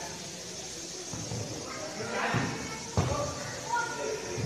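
Young players' voices calling out during a futsal game, with a single sharp thud of the ball being struck about three seconds in.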